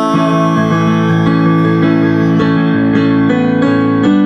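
Instrumental passage of a pop-rock song: piano playing sustained chords that change every second or so, with no singing.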